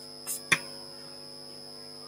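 Steady mains hum under a quiet room, broken about a third of a second in by a brief scratch of chalk on a blackboard and a sharp tap of the chalk against the board just after.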